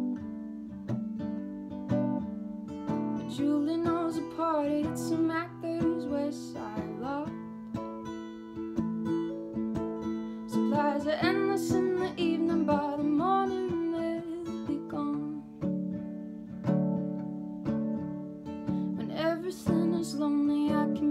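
A woman sings over a capoed steel-string acoustic guitar that is picked in a steady pattern. The vocal comes in phrases, with gaps where only the guitar is heard.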